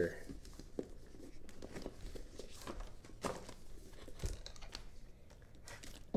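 Plastic wrap and cardboard packaging of trading-card boxes being torn open and crinkled by hand: faint, scattered rustles and small ticks.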